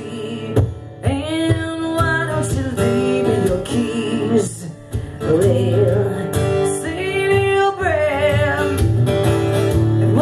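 A woman singing while strumming a steel-string acoustic guitar, holding long notes; a held note wavers with vibrato about eight seconds in.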